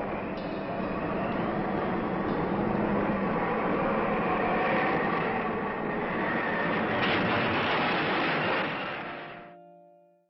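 Steady rushing roar of storm wind, fading out about nine seconds in.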